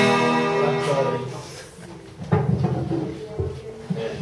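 Acoustic guitar chord strummed and left ringing, fading out over about two seconds. A man's voice follows.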